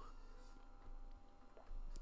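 Quiet room tone with a faint steady electrical hum, and one faint click near the end.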